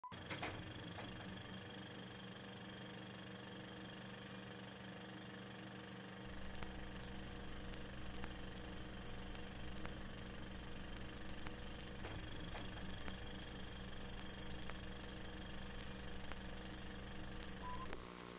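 Old film projector running with a steady hum and scattered crackling clicks. A deeper low hum joins about six seconds in.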